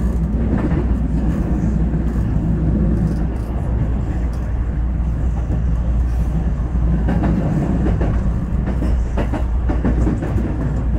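JR West 221 series electric train running along the track, heard from inside: a steady low rumble of wheels on rail. Clusters of clacks come in the second half as the wheels cross points.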